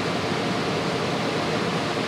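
Steady, even hiss of background noise in the hall's sound pickup, with no other sound in it.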